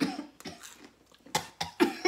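A person coughing several times, harsh, sudden coughs with the loudest cluster after about a second and a half. The coughing is set off by the burn of a super-hot chili chip just eaten.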